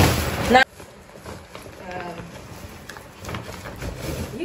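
Rustling and handling of bags and packaging, loud at first and cut off abruptly under a second in, followed by quieter handling noises and faint murmured speech.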